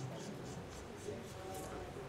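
Carom billiard balls rolling across the table cloth during a three-cushion shot: a soft, even rolling sound under quiet hall ambience, with no ball strikes.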